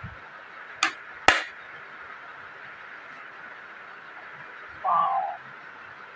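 A kitchen knife cutting through a papaya: two sharp cracks about half a second apart near the start. A short hum-like sound follows near the end.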